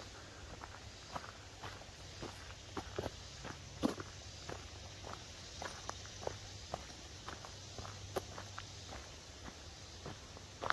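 Footsteps of a person walking on a dirt forest path strewn with dry leaves and twigs, about two steps a second.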